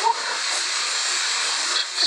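A steady hiss, even and unbroken, sitting in the middle and upper range with little low rumble.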